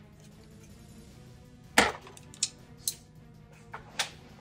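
A few sharp clicks and knocks of painting tools being handled at the palette, the loudest about two seconds in, over quiet background music.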